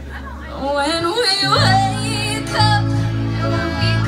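Live band music: a woman singing over digital piano and electric bass, her voice coming in about half a second in over held low notes, with the bass line moving from about a second and a half.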